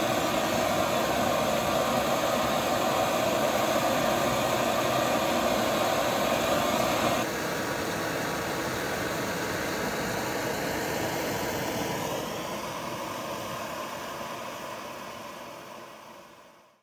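Primus No.96 paraffin pressure stove burning after preheating and pumping, its vaporising burner giving a steady rushing hiss: the stove is working. The sound drops a little about seven seconds in and fades away over the last few seconds.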